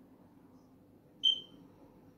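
A single short, high-pitched electronic beep about a second in, over faint low room hum.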